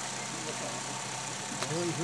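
Steady background hum and hiss at an outdoor gathering during a short pause in a speech, with faint voices and a soft click a little before the end.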